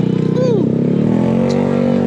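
Motorcycle engine running at low revs, a steady drone that steps up slightly in pitch a little past the middle. A short falling vocal sound comes about half a second in.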